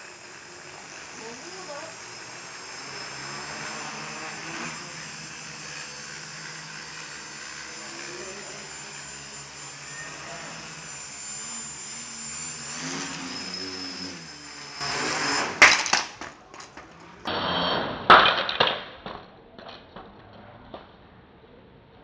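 Homemade quadcopter's motors and propellers running with a steady high whine, which cuts off about fifteen seconds in with a sharp loud clatter as the drone strikes something. A few loud knocks and rustles follow.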